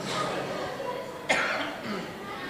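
A man coughs into his sleeve: one sudden cough a little past halfway through.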